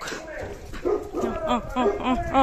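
A dog barking in a run of short, pitched barks, about three a second.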